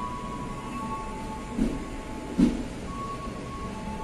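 Passenger train rolling slowly out of a station, a steady running noise with two dull thumps of the wheels over the track, under a second apart, midway through.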